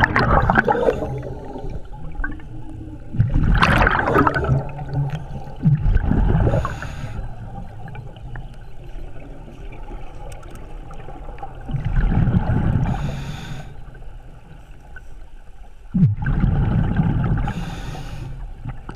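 Scuba regulator breathing underwater: rumbling, gurgling bursts of exhaled bubbles every few seconds, with a shorter hiss of inhalation through the regulator between some of them.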